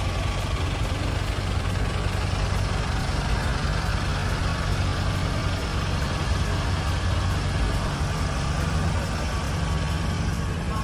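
Truck engine idling steadily, a low even drone with no revving or breaks.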